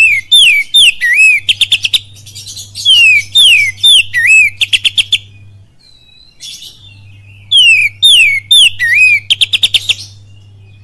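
Oriental magpie-robin (kacer) singing loudly in three repeated phrases. Each phrase is a few sharp down-slurred whistles followed by a fast burst of short clipped notes, with a pause of about two seconds before the last phrase.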